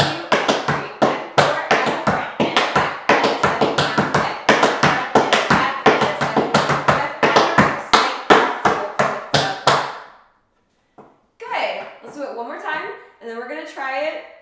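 Tap shoes striking a wooden tap board in a quick, rhythmic run of sharp taps: a riff, spank-cross and rhythm-turn (heel, heel, toe, toe) combination, stopping about ten seconds in. A woman's voice follows near the end.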